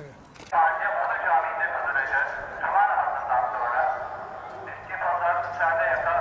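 A voice heard through a small speaker, thin and tinny, starting suddenly about half a second in, dipping briefly, then cutting off abruptly.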